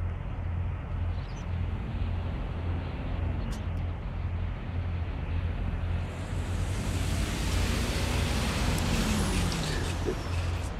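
Road traffic with a box truck approaching and driving past. Its noise builds over the last few seconds, and its engine note drops as it goes by near the end.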